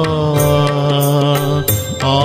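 Devotional Hindi bhajan music: one long, steady held note that ends near the end, over accompaniment with light, evenly spaced percussion strokes keeping time.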